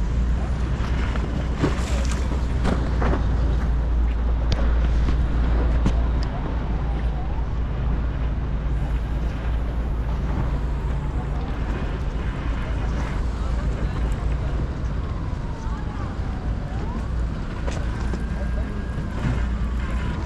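Wind rumbling on the microphone over a steady low engine drone from a motorboat on the water. The rumble is heaviest for the first six seconds, then eases.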